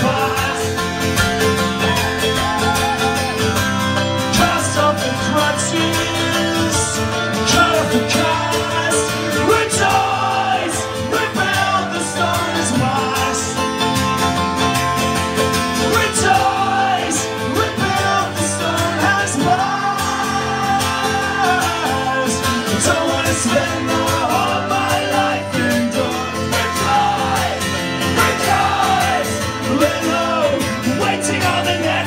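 Live acoustic folk-rock song: a strummed acoustic guitar and a second guitar, with male voices singing over them.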